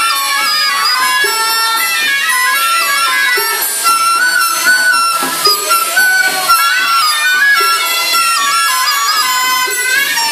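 Taoist ritual music: reed wind instruments play a stepwise melody in several parallel voices, with a few percussion strikes and a brief noisy wash in the middle.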